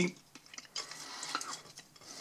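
Metal fork cutting through a potato pancake and scraping on the plate, a quiet scrape with a few faint clicks through the second half.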